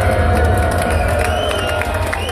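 Loud live rap concert: music through the PA with heavy, steady bass and a held pitched line above it, over a crowd cheering and shouting.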